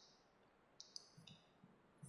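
Near silence, broken by a few faint, sharp clicks, most of them clustered about a second in, with faint soft thuds after them.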